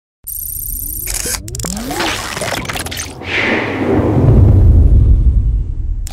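Channel logo intro sound effects: noisy whooshes and rising glides, building to a loud, deep rumbling swell about four seconds in.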